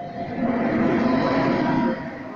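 Intercity train running past close alongside the platform, its rear electric locomotive going by with loud running noise and a steady humming note. The sound swells about a third of a second in and drops away suddenly near the end.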